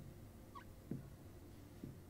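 Marker pen writing on a whiteboard: faint knocks as the tip meets the board, about once a second, with a short squeak about halfway through.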